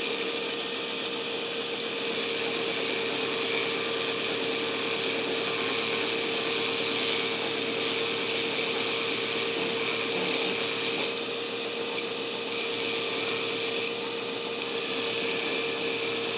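Belt grinder running with a steady hum while the steel shank of a hardy tool is ground on the belt over its contact wheel. The shank is being squared up and its tail end reduced so it fits the anvil's hardy hole. The grinding hiss eases briefly twice in the last few seconds.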